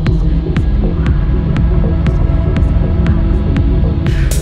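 Electronic house-techno track: a deep, pulsing bass with a light click about twice a second and no voice.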